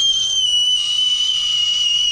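One long, steady, high-pitched whistle, a single held note that sags slightly in pitch towards the end.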